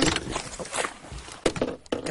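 Electric trolling motor's propeller churning and splashing water at the surface as the motor is pulled up, with two sharp knocks in the second half.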